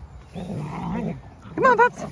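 Two dogs play-fighting: a low growl lasting under a second, then two short high-pitched yelps near the end.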